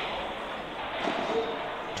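Steady background noise of an indoor padel hall while a rally is played, with a faint voice about a second in; no distinct ball strikes stand out.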